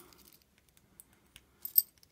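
Light metallic clicks and taps from a brass Slaymaker warded padlock and a warded pick being handled. A short run of sharper metal clinks comes near the end, the loudest just before it finishes.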